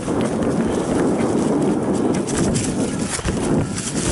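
Mountain bike, a Giant Trance, rolling fast over a dirt singletrack covered in dry leaves: continuous crunch and rush of the tyres through the leaves, with the bike rattling and clattering over bumps and roots.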